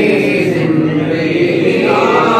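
Unaccompanied male voices singing a line of a Punjabi naat with long, drawn-out held notes.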